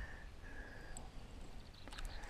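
Quiet pond-bank ambience: low wind rumble on the microphone, a faint thin high tone in two short stretches early on, and one faint click near the end.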